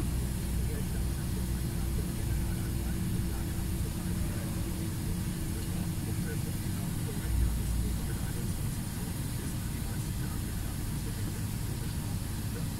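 Cab interior of a truck creeping in slow traffic: the diesel engine runs low and steady under a constant road rumble, with a faint steady whine that fades out about seven seconds in and a brief low bump just after.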